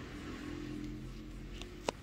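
A low, steady mechanical hum with a few pitched tones, fading about three-quarters of the way through, then a single sharp click near the end.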